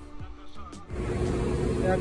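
A steady mechanical hum with a constant low tone starts abruptly about a second in, and a man's voice begins near the end.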